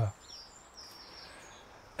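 Quiet outdoor background with a few faint, high bird calls.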